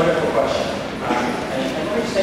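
A man speaking into a lectern microphone; only speech.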